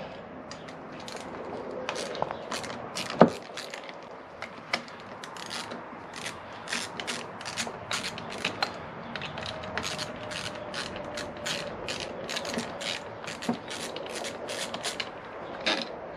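Hand ratchet clicking in short runs as the master cylinder clamp bolts on a motorcycle handlebar are undone, with one louder knock about three seconds in.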